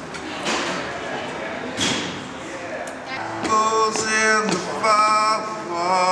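A man singing held notes to an acoustic guitar, coming in about halfway through, over conversation in a large, echoing room.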